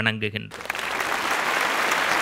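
A seated audience applauding, the clapping starting about half a second in, just after a word of speech, and holding steady.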